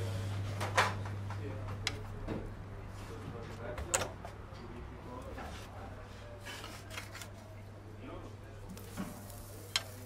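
Scattered sharp metal clicks and clinks from stainless steel tongs and a metal tray being handled, with a steak laid on a kamado grill's grate near the end, over a steady low hum.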